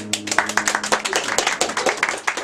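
Audience clapping in quick, irregular claps; the last strummed chord of an acoustic guitar rings out under the first claps.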